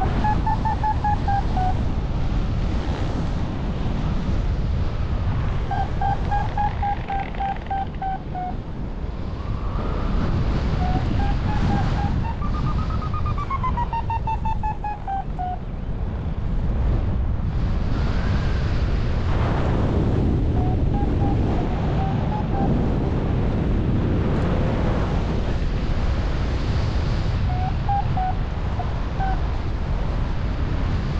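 Wind rushing over the microphone in flight, with a paragliding variometer beeping in several runs of quick beeps whose pitch rises and falls: the tone it gives while the glider climbs in lift. The longest and highest run comes about halfway through.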